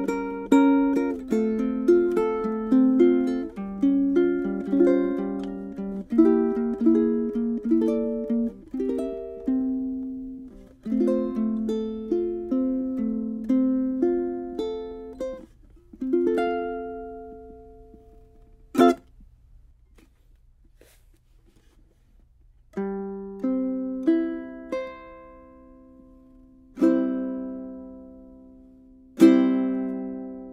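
Tenor ukulele with a Tusq saddle played fingerstyle: a quick picked melody that slows and stops about sixteen seconds in. A single sharp click follows, then after a short pause a few separate chords, each struck and left to ring out and fade.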